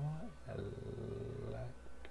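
A man speaking in a low, drawn-out voice: a short rising "so", then "that right?" held on one low, steady pitch for about a second.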